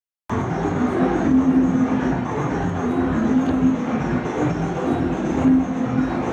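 Live electronic music from synthesizers and a groovebox: a dense, rumbling drone with a low held note that keeps coming back. It starts abruptly just after the beginning.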